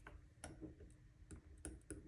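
Near silence with a few faint, irregular clicks.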